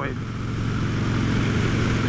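Motorcycle running on the road, a steady low engine hum under rushing wind noise that grows slightly louder.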